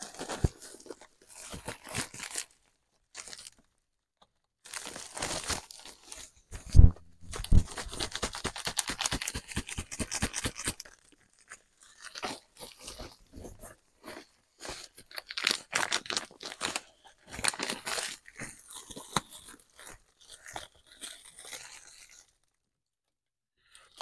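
A plastic shipping mailer bag and a jacket being handled and folded for packing: irregular crinkling and rustling in spells with short pauses, stopping about two seconds before the end.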